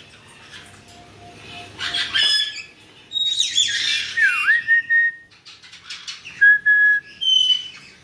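Pet caiques whistling and chirping: short clear whistles at several pitches with quiet gaps between them. One dips down and back up about four seconds in, and a steady higher whistle comes near the end.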